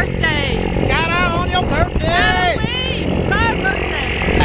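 Excited talking over a steady low engine hum.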